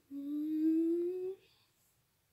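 A person humming one long note that slowly rises in pitch, lasting just over a second.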